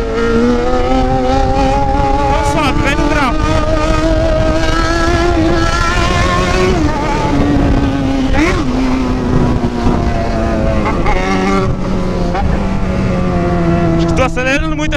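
Yamaha XJ6 inline-four motorcycle engine under way, pulling with a slowly rising pitch for about six seconds. It dips briefly twice as the rider shifts gears, then settles to a lower, steady pitch near the end.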